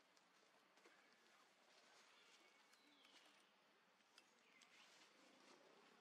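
Near silence: faint outdoor ambience with a few soft clicks and two faint chirps, about halfway through and near the end.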